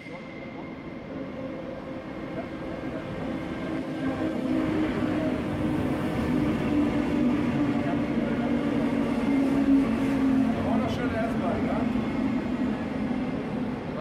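DB class 420 S-Bahn electric multiple unit running through the station at speed, a steady low hum over wheel and rail noise. It grows louder for the first few seconds, is loudest in the middle as the train passes, and eases off near the end as it moves away.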